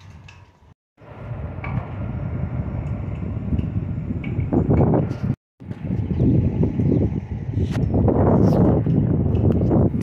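Wind buffeting the microphone, a low rumbling noise that grows stronger after about a second and in the second half. The sound cuts out completely twice for a moment.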